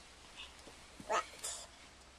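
A toddler's short, high-pitched one-word answer about a second in, ending in a brief breathy hiss.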